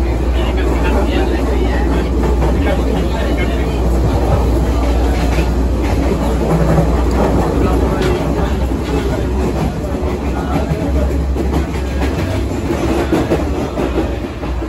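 Steady running noise of an S14 diesel multiple unit heard from inside a passenger carriage: a deep, continuous low drone under a dense rattling wash, with background voices.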